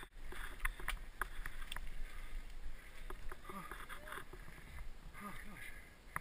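Scattered light clicks and rattles from a mountain bike, with faint voices of other riders about halfway through and again near the end.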